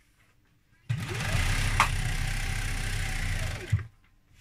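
Domestic sewing machine stitching a hem along the edge of cotton fabric: it starts about a second in, speeds up, runs steadily for nearly three seconds and slows to a stop near the end. A single sharp click sounds partway through the run.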